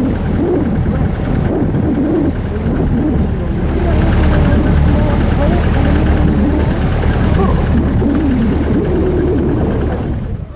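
4x4 pickup truck driving over desert sand, a loud steady engine drone with road noise, heard from on board the moving vehicle.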